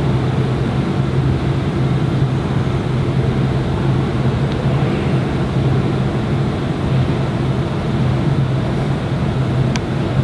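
Steady low rumble with a constant hum, unchanging throughout.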